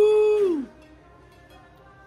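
A single held musical note, steady in pitch, that slides down and stops about half a second in; after it only faint room sound.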